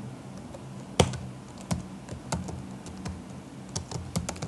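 Typing on a computer keyboard: a run of unevenly spaced key clicks, the loudest about a second in.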